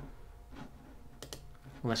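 A few light, separate clicks from a computer mouse and keyboard, over a low steady background hum.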